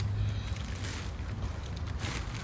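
Steady low wind rumble on the microphone outdoors, with faint rustling.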